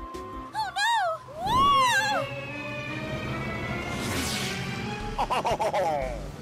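Cartoon background music with short swooping, whistle-like pitch slides, then a long falling tone and a whoosh about four seconds in as a paper plane glides through the sky.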